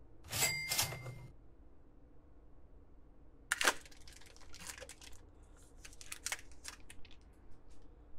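A foil trading-card pack torn open about three and a half seconds in, followed by crinkling and rustling as the wrapper is pulled apart. A brief rustle of cards being handled near the start.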